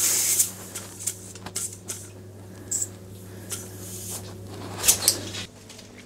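Compressed air hissing from a compressor hose's inflator chuck on the valve of a homemade gas-cylinder autoclave as it is pumped to about 1.1 atmospheres: one loud hiss at the start, then a few short hisses and clicks. A steady low hum runs underneath and stops shortly before the end.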